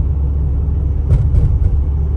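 Steady low rumble of a car's engine and tyres on asphalt, heard from inside the cabin while driving uphill.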